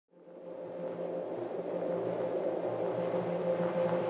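Steady ambient drone fading in from silence and building slowly, a held mid tone over a low hum.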